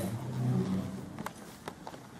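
A low, indistinct murmur fading out within the first second, then several sharp clicks and taps of the camcorder being handled and moved.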